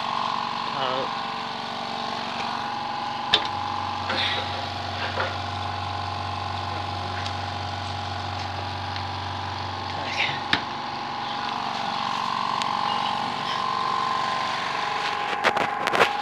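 Steady electric motor hum from a coal-fired stove's blower equipment, with a deeper low rumble joining for several seconds from about three and a half seconds in. A few sharp clicks break in, and there are brief faint voices.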